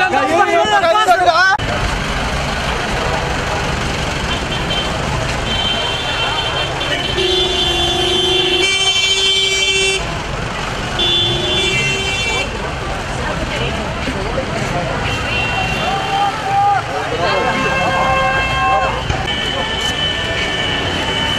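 Noisy street crowd din, with shouting voices at the start, then horns sounding in several long, steady blasts of one to three seconds each.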